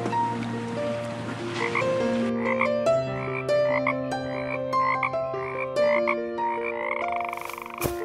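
A frog croaking in short calls about twice a second, with a longer call near the end, over gentle background music.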